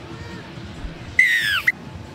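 Referee's whistle blown once, a long blast falling in pitch with a short chirp at its end, signalling the kick-off of the second half. Steady stadium crowd noise runs underneath.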